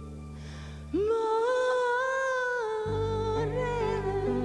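Female voice singing a long held note over sustained low accompaniment chords. About a second in the note scoops up and is held, then falls back near the end; the low chords drop away while it is held and come back as it falls.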